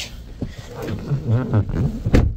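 A man laughing in short bursts as he climbs into the back seat of an SUV, with rustling from the movement.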